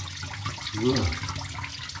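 Backed-up water from a clogged bathroom sink running steadily out of the opened drain pipe under the basin and splashing into a plastic tub.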